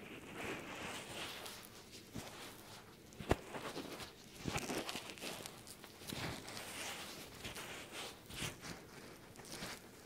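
Close-up rubbing, scratching and crackling as an ear is gently cleaned against a binaural microphone, with a sharp click about three seconds in.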